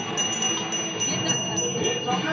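A small brass hand bell of the kind used in Hindu ritual worship, rung steadily at about four strokes a second with a sustained metallic ring. The ringing stops near the end.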